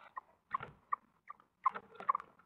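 Tawny owls feeding in a nest box: about six short, high squeaks, irregularly spaced, mixed with rustling and scraping as the female tears prey and feeds the owlets.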